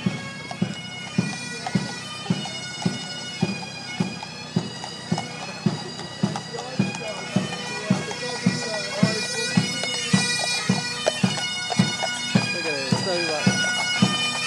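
Military pipes and drums marching: bagpipes play a tune over their steady drone while a bass drum beats evenly, about twice a second. The band grows louder toward the end.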